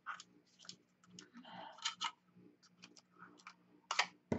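Handheld craft tab punch being worked on black cardstock: scattered light clicks and a brief paper rustle, with the sharpest click near the end.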